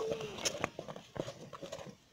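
A stirring stick knocking and slapping in a pot of thick tuwon masara (maize-flour paste) as it is stirred and turned over a wood fire: a quick, irregular series of knocks.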